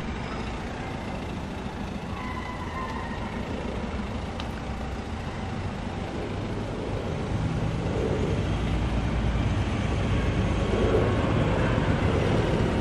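A small hatchback car (Renault Clio) running at low revs as it reverses slowly, a steady low engine rumble that grows gradually louder over the second half as the car comes closer.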